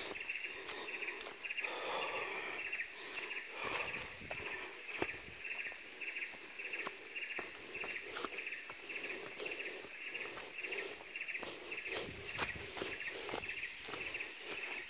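Fairly quiet forest ambience: wildlife calling in a steady, fast-pulsing high chorus throughout, with scattered soft clicks and crunches of footsteps on leaf litter.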